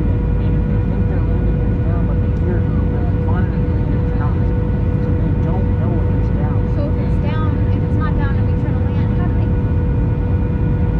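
Steady cabin noise of a jet airliner in flight: a low rumble with a constant mid-pitched tone above it.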